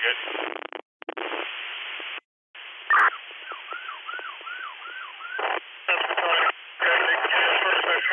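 Fire-dispatch two-way radio traffic without clear words: keyed transmissions of hiss and static, broken by two short dropouts as the squelch closes. About three seconds in a click is followed by a run of about six quick falling tones, and loud static fills the last two seconds.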